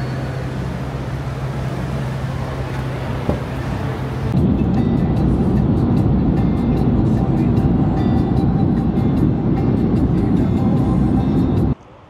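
Vehicle noise from a passenger van. For the first few seconds a steady low hum runs beside it. Then, at a cut, a louder, denser rumble sets in, the road noise heard inside the van's cabin while it drives, and it stops abruptly near the end.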